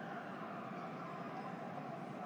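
Faint, steady hiss with no distinct sound event.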